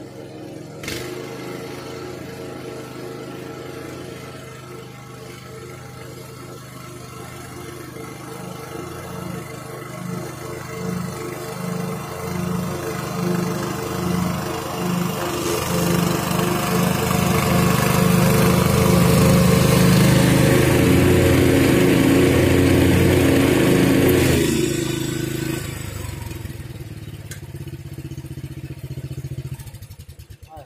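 Riding lawn mower engine running steadily, growing louder as it comes closer and loudest for several seconds as it passes. It drops off abruptly about twenty-four seconds in and fades as it moves away.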